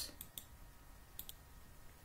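Two pairs of faint computer mouse clicks, about a second apart, over quiet room tone.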